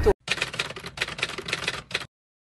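Typewriter sound effect: rapid key clatter in a few quick runs separated by short pauses, stopping just before the end.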